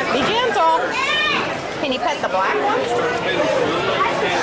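Overlapping voices of people talking, without clear words.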